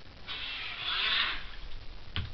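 Homemade RC scale jet boat's small 130-size brushed electric motor and brass jet drive running in a burst of about a second, churning water.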